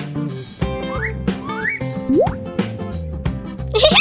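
Background music for a children's cartoon, with several short rising whistle-like glides laid over it as sound effects.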